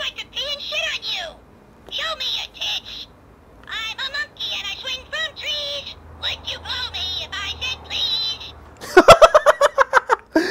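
Talking plush monkey toy, squeezed at its belly button, playing a string of recorded trash-talking voice lines through its small speaker, with short pauses between them. Near the end it gives a rapid run of loud shrieks rising in pitch.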